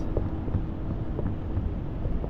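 Road and engine noise inside a moving vehicle's cabin: a steady low rumble, with a faint hum that fades out near the end.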